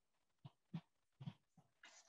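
Near silence: room tone broken by a few faint, short sounds.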